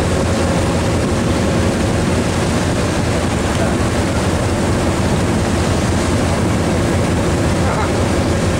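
A fishing boat's engine running steadily at low speed as the boat moves along, with a constant low drone.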